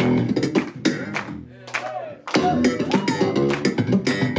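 Electric bass guitar played solo with slap technique: a funky line of sharp, percussive slapped and popped notes. It thins out and drops quieter for a moment about a second and a half in, then picks back up.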